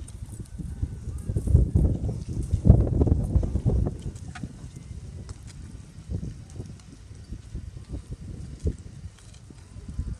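Hoofbeats of a horse cantering on a sand arena, under a low rumble that is loudest between about one and a half and four seconds in.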